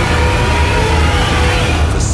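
Loud film-trailer sound mix: a pulsing deep bass and held tones of the score under a heavy mechanical rumble from the giant robot's sound effects, with a faint rising tone. It cuts off sharply at the end.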